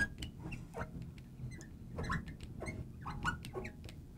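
A marker writing words on a glass lightboard: a string of short, high squeaks and light ticks as the tip drags and taps across the glass.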